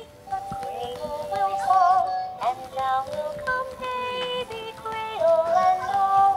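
Rockabye Bear plush toy singing a lullaby after its paw is pressed: a slow melody of held, wavering notes.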